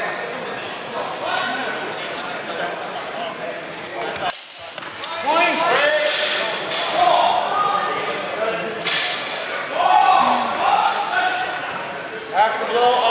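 Indistinct voices and short calls echoing in a large sports hall, with a couple of sharp knocks about four seconds in and again near nine seconds.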